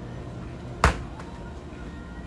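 A single sharp knock a little under a second in, over a steady low hum.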